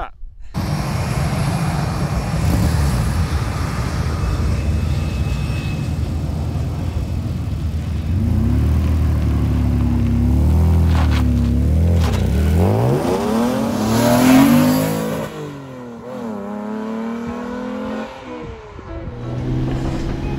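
Tuned Vauxhall Omega MV6 V6 engine in a Reliant Scimitar SE6a, running through its exhaust with the revs rising and falling as it is driven. It climbs hard to its loudest about fourteen seconds in, drops sharply as if on a gear change, then rises again.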